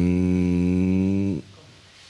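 A man's drawn-out hesitation sound, a hum held at one steady pitch for about a second and a half that dips as it ends.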